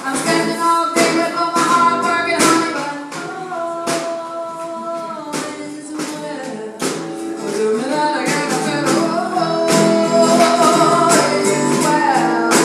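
Live acoustic music: a woman singing over her strummed acoustic guitar, with a snare drum keeping a steady beat.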